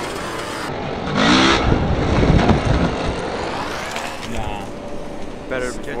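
A 65cc two-stroke dirt bike's engine revving as the bike comes down onto an inflatable airbag. A shout sounds about a second in, and there is a heavy rumble for the next couple of seconds.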